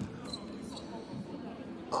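Basketball being dribbled on a hardwood court amid the low noise of play in a large, mostly empty hall.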